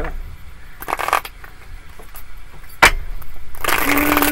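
A deck of tarot cards being shuffled by hand: soft scuffs of cards sliding, a sharp tap a little before three seconds in, then a riffle shuffle near the end with the cards fluttering together in a rapid burst.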